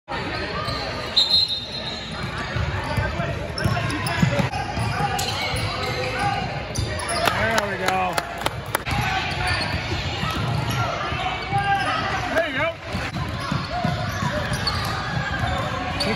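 A basketball bouncing on a hardwood gym floor, with a run of sharp knocks about seven to nine seconds in, over continuous chatter from spectators and players in an echoing gym.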